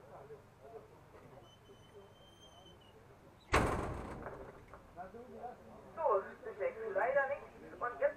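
A door banged shut about three and a half seconds in, one loud bang with a brief rattle, followed by men talking at a distance.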